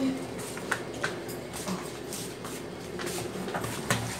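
Schindler lift car descending: a faint, steady hum inside the cab, with a few soft clicks and rustles.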